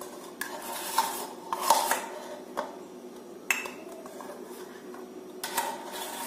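A spoon knocking and scraping against a bowl and glass as whipped dalgona coffee is scooped out and spooned onto milk. There are about six short, irregular clinks and scrapes.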